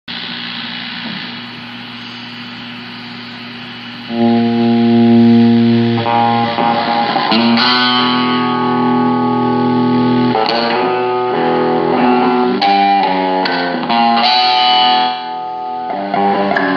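Guitar played through a small Samick amplifier: quieter held notes at first, then about four seconds in a loud chord rings out, followed by a series of sustained chords and single notes.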